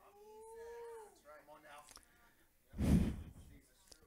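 A faint, drawn-out hum of a voice in the first second, then a short breathy puff of noise on a handheld microphone about three seconds in.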